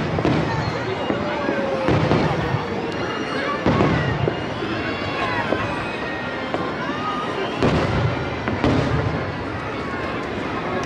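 Aerial fireworks shells bursting overhead, with four main bangs at uneven intervals over a continuous rumble of smaller bursts.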